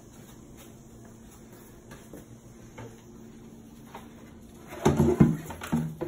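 A few faint knocks, then about five seconds in a lower kitchen cabinet door being opened, with a loud pitched creak from its hinges.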